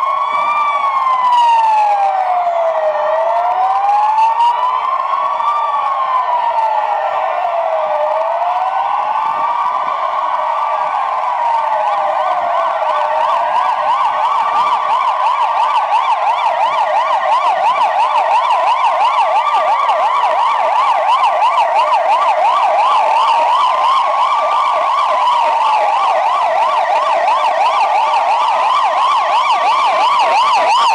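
Police car sirens from a passing convoy of patrol cars, several sounding at once. A slow wail rises and falls about every five seconds; partway through, a fast yelp of several sweeps a second joins it and both carry on together.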